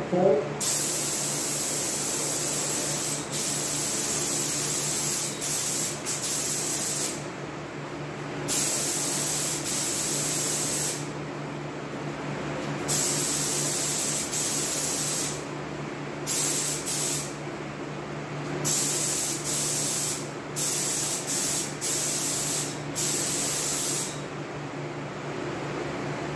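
Gravity-feed paint spray gun laying on base coat, its air hiss starting and stopping with each trigger pull in passes of one to several seconds, over a steady low hum.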